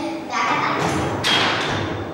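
Voices talking with a thud or two among them, the clearest thud a little past the middle.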